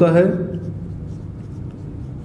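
Marker pen writing on a whiteboard, faint strokes over a steady low hum.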